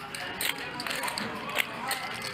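A few faint clicks of poker chips being handled at the table, over a low, steady background noise.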